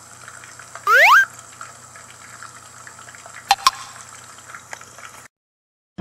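Plastic toy tongs moving food in a small glass pot of liquid, with faint liquid sounds over a steady hiss. About a second in comes a short, loud, rising squeak, and about three and a half seconds in two sharp clicks with a brief ring, like the tongs tapping the glass.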